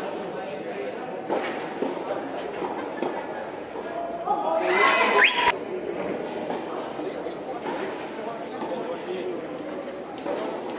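Voices and chatter of players and onlookers around a doubles tennis rally, with a loud, rising shout about five seconds in. A few sharp knocks of racket on ball come through in the first two seconds.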